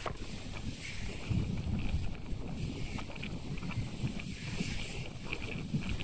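Wind buffeting the microphone on a moving ship's open deck: an uneven, gusting low rumble with a steady hiss above it and a few faint clicks.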